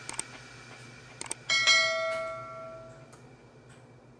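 Subscribe-button animation sound effect: a pair of mouse clicks, another pair about a second later, then a bell chime that rings out and fades over about a second and a half.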